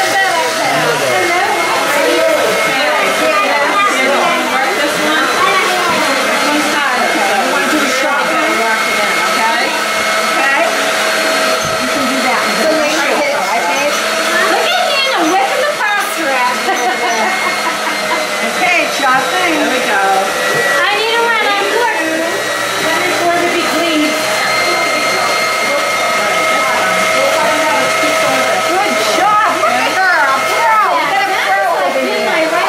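Stand mixer motor running steadily with a whine, driving a pasta cutter attachment while sheets of fresh dough are fed through and cut into noodles.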